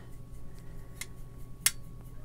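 Paintbrush mixing ultramarine watercolour in a palette's mixing well, with two sharp ticks about two-thirds of a second apart, the second the louder, as the brush knocks against the palette. A faint low hum runs underneath.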